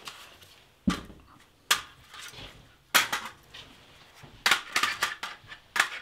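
An FN PS90 carbine being handled, with sharp plastic-and-metal clicks and clacks as its magazine is taken off the gun. The clicks come singly at first, then several in quick succession about four and a half seconds in.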